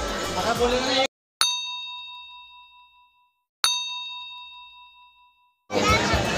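A bell struck twice, about two seconds apart, each strike ringing out with a clear tone and fading away over a second and a half. The strikes sit in dead silence, with the ambient noise cut away, as a bell sound effect laid in during editing.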